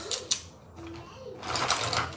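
Makeup brush handles clicking and clattering against each other as a bundle of brushes is handled and pushed into a fabric cosmetic bag: two quick clicks at the start, then a longer clatter and rustle in the second half.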